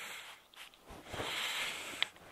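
70% alcohol sprayed from a small spray bottle onto pruning shears to disinfect the blades: a short hissing spritz, then a longer, louder one from about a second in. A sharp click comes at the very end.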